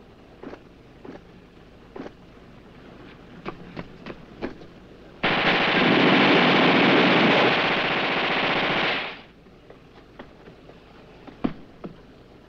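A machine gun fires one long, continuous burst of about four seconds, starting about five seconds in. Before and after the burst come the scattered footfalls of a man running over dry, stony ground.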